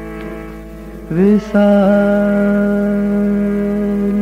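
Ghazal music: a male voice scoops up into a long note about a second in and holds it steadily for nearly three seconds over a soft sustained accompaniment.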